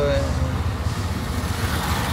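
Steady low motor rumble, with a voice trailing off in the first half second.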